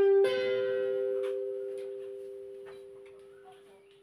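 Electric guitar: two high notes picked a quarter second apart, left ringing together and slowly fading away.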